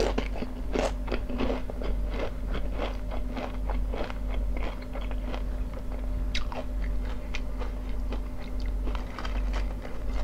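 Close-miked chewing of crunchy potato chips: a dense run of sharp, irregular crunches, several a second.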